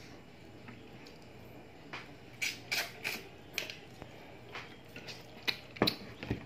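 A spoon clinking and scraping against ceramic plates as food is dished out: a string of sharp clinks, irregular and a few a second, starting about two seconds in. Near the end a plate is set down hard on a wooden table, the loudest knock.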